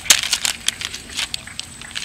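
Bare feet and hands slapping and scuffing on paper sheets taped to asphalt, a run of irregular sharp taps and crackles, the loudest just after the start.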